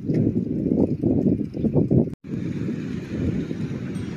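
Wind buffeting the microphone of a camera on a moving bicycle, mixed with the rumble of the tyres over the pavement. The sound cuts out for a split second just after halfway, then goes on steadier.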